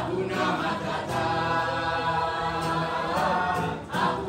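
Many voices singing together as a choir, holding one long chord from about a second in until just before the end.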